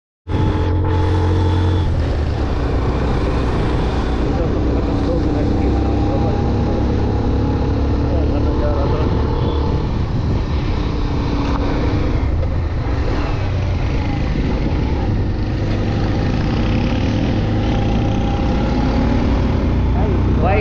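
Motorcycle engine running steadily at cruising speed, about 32 km/h, heard from the rider's position, with heavy low wind rumble on the camera microphone. The sound is loud and unbroken.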